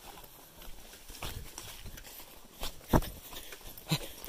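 Footsteps on a rough, overgrown path: irregular thumps and scuffs, the loudest a little before three seconds in.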